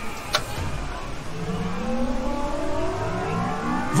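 Cartoon time-travel sound effect: a short click, then a whooshing rush with a whine that glides steadily upward over the last couple of seconds.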